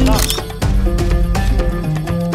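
A camera-shutter click sound effect just after the start, then background music with a steady beat.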